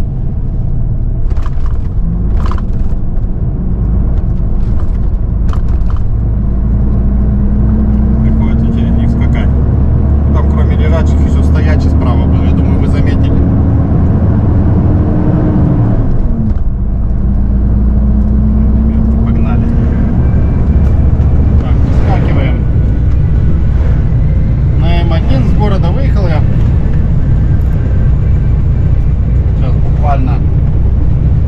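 A truck's diesel engine heard from inside the cab as it accelerates. The engine note climbs slowly, drops sharply at a gear change about halfway through, then climbs again through the next gear.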